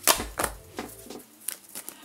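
A tarot card being drawn from the deck and laid on the table: two light card slaps close together near the start, then a few faint ticks.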